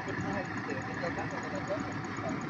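Faint voices of people talking in the distance over a steady background rumble.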